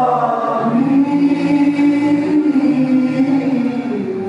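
A choir singing in long held notes, the voices moving together to a lower sustained note about a second in.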